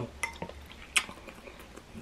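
A few light clinks of a metal fork against a glass bowl, the sharpest about a second in.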